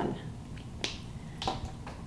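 Two light, sharp clicks, a little over half a second apart, from handling a felt-tip marker and its cap and a filled pint canning jar on a stone counter.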